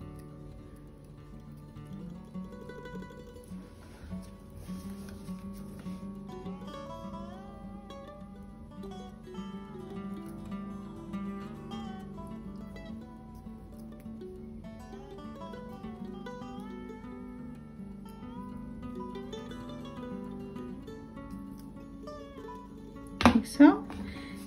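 Soft background music led by plucked acoustic guitar, a calm melody of single notes; a voice starts just before the end.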